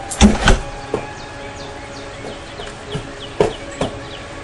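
Soft knocks of a footbag being kicked and shoes tapping and scuffing on concrete: a close cluster of knocks at the start, then single knocks about a second in and three more near the end. A run of quick, faint falling chirps from a bird sits under them in the middle.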